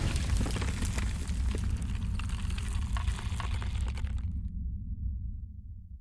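Logo-reveal sound effect: a rumbling burst full of crackling, like rock breaking apart. The crackle dies away after about four seconds and the low rumble fades out.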